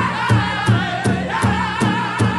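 Pow wow drum group singing in high voices over a steady beat on a big drum, about three beats a second.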